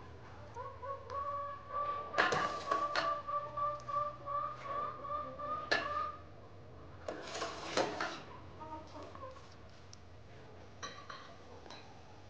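Domestic fowl calling in the background: one long, wavering call held for about five seconds in the first half, with a few short, sharp sounds before and after it.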